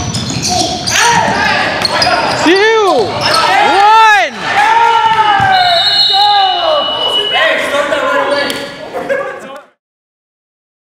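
Men's voices shouting long calls that rise and fall, ringing in a large gymnasium, with a few ball bounces or thuds early on. The sound cuts off suddenly near the end.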